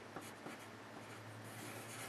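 Pencil writing faintly on paper, scratching out numbers and then circling the answer, over a low steady hum.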